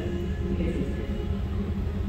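Steady low rumble of the hot shop's natural-gas reheating furnace (glory hole) burning, with the shop's ventilation, while a glass piece is being reheated.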